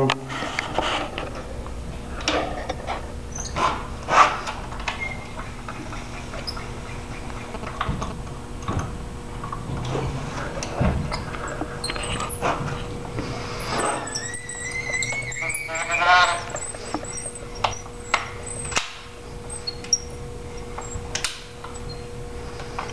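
Built-in crank cocking device on a Barnett Quad 400 crossbow being wound to draw the string back to the latch, with repeated light clicks from the mechanism. About two-thirds of the way through comes a squeaky whine rising in pitch for a couple of seconds.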